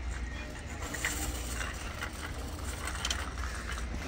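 Shopping cart rolling over a concrete store floor: a steady low rumble with faint, scattered rattles.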